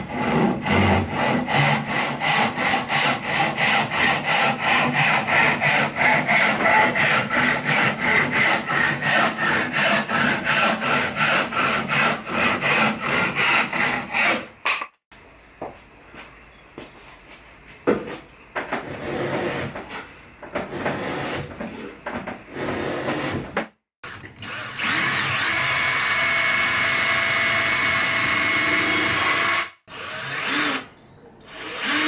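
Hand saw cutting through a board in steady back-and-forth strokes, about three a second, for the first half. After a pause with a few knocks and handling noises, a cordless drill runs steadily for the last few seconds.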